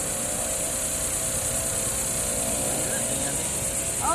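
Steady outdoor background drone: a low mechanical hum carrying a few steady tones, under a constant high-pitched hiss, with no sudden events.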